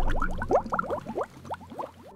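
Cartoon bubble sound effect: a rapid string of short rising bloops, thinning out and fading away toward the end.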